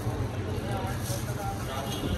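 Indistinct background voices of people talking over a steady low hum.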